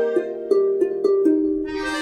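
Synthesized harp notes from the Star Trek Vulcan Harp iPad app, plucked one at a time in a short melody that steps mostly downward, about six notes in two seconds, over a steady low held tone.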